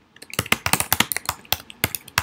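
Typing on a computer keyboard: a quick run of key clicks, several a second, starting a moment in.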